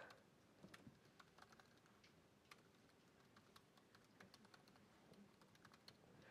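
Faint typing on a laptop keyboard: a run of soft, irregular key clicks as an email address is typed in.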